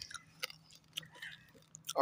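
A person chewing crisp papad close to the microphone: a few faint, irregular crunches.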